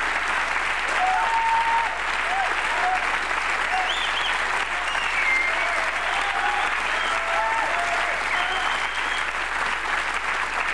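Studio audience applauding steadily, with a few voices heard through the clapping.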